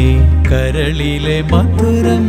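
Music: a male voice sings a wavering, ornamented line over steady low accompaniment, in a Malayalam song set to a Carnatic kriti.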